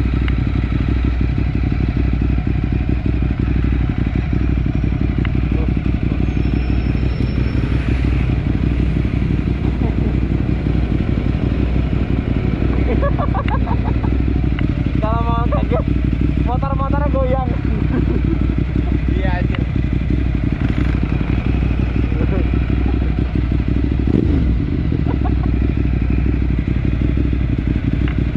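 Ducati motorcycle with a Termignoni exhaust idling steadily with a deep, even rumble while stopped.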